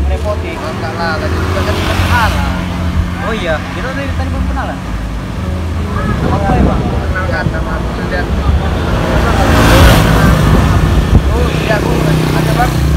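Motor scooter engine running slowly as the scooters ride along, a steady low drone, with indistinct voices over it. A louder rushing noise comes near the end.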